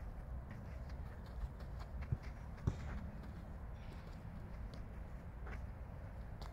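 Faint, scattered footfalls or taps on the ground over a low steady rumble.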